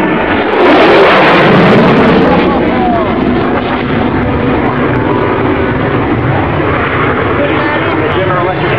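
F-16 fighter jet's single engine heard as it passes overhead. The jet noise swells sharply about half a second in, is loudest for the next two seconds, then fades to a lower rumble, with voices underneath.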